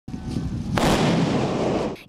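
155 mm towed howitzer firing: a low rumble, then one sharp blast about three-quarters of a second in that dies away into a long rumble, cut off just before the end.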